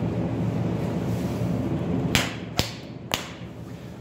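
Steady low hum in a paint booth, then three sharp clicks about half a second apart a little past halfway, from the camera being handled and brought to rest.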